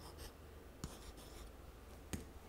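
Faint scratching of a pen writing numerals, with one small tap a little under a second in.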